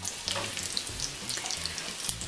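Hot oil sizzling steadily with scattered small crackles as breaded potato-and-tuna croquettes shallow-fry in a skillet.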